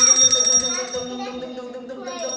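Small metal hand bell ringing, its ring fading away over the second half.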